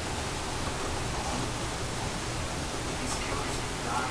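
Steady hiss of background noise, with a faint voice murmuring now and then.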